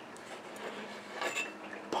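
Quiet room tone with a faint hum, and one faint, brief sound a little over a second in.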